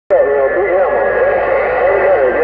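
A garbled voice coming through a Uniden Grant XL CB radio's speaker, narrow and tinny, with a thin steady whistle under it.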